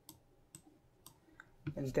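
A few faint computer mouse clicks, spaced roughly half a second apart, while a video clip is dragged and dropped onto an editing timeline.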